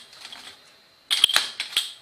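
Glass test tubes clinking and rattling against each other and a metal tray as they are handled: a quick run of sharp clinks about a second in.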